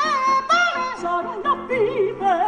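A mezzo-soprano singing short operatic phrases with vibrato and leaps in pitch, over piano accompaniment.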